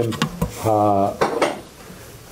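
A few quick, sharp clicks like small hard objects knocking together, then a man's voice holding one drawn-out hesitation vowel for about half a second.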